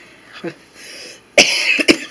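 A person coughing, one sudden loud cough about one and a half seconds in with a short second catch just after it.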